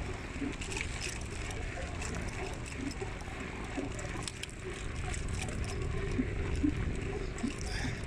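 Wind rumbling on the microphone of a phone filming from a slowly moving vehicle, with tyre and road noise on paving underneath.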